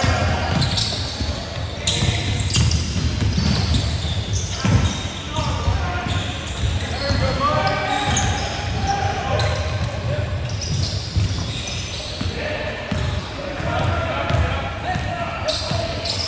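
A basketball bouncing on a hardwood court in a large, echoing gym, with players calling out during play.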